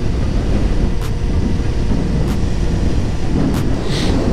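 Suzuki GSX-R1000 inline-four sport bike being ridden at a steady cruise: a continuous low engine and road rumble mixed with wind buffeting the microphone.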